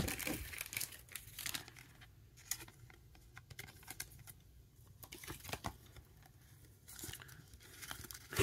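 Clear plastic card sleeve crinkling and rustling as a trading card is handled and slid into it: a scatter of faint crinkles, with a sharper click right at the start.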